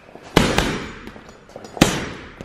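Gloved punches landing on a hanging heavy punch bag: two sharp hits about a second and a half apart, each trailing off over about half a second.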